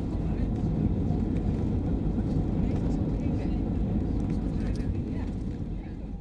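Cabin noise of a Boeing 737-700 on its landing rollout: a steady low rumble of engines and runway, with the spoilers deployed, fading out near the end.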